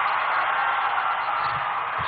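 Steady, even background noise of a large event venue with no one speaking, neither rising nor falling.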